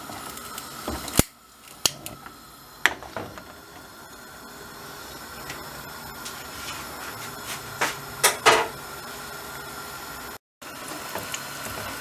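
Gas stove burner relit with a long lighter: three sharp igniter clicks in the first few seconds, then the steady hiss of the gas flame burning under the tray. A few more sharp clicks come about two-thirds of the way through.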